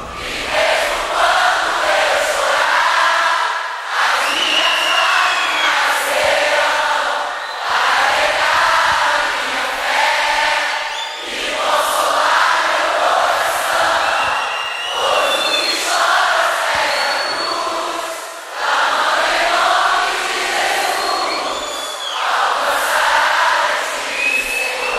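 A large live concert audience singing a worship song together with the band dropped out, phrase after phrase with short breaths between.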